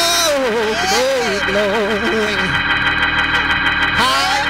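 A man singing a wordless gospel run into a microphone, his pitch sliding and wavering up and down over a held organ chord.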